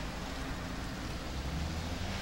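Steady background hiss with no distinct events, a faint low hum rising slightly in the second half.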